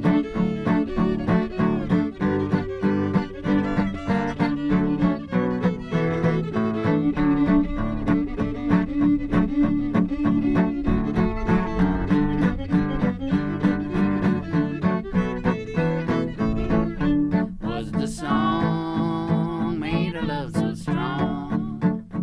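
Fiddle and acoustic guitar playing an instrumental break in a honky-tonk country song: the fiddle carries the melody in long bowed notes while the guitar strums a steady rhythm, with the fiddle climbing to higher notes near the end.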